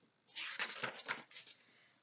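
Paper rustling as a page of a picture book is turned and the book handled: a short run of crisp rustles starting about a quarter second in and fading out after about a second.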